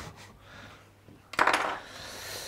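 A short rustle of the paper wrapper around a block of butter as it is handled and cut with a knife, coming suddenly about halfway through and fading into a softer hiss.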